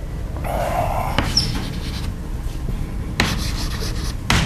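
Chalk scraping and tapping on a chalkboard as someone writes: a rough stretch of scraping in the first second, a brief high squeak, then a quick run of strokes near the end, over a steady low room hum.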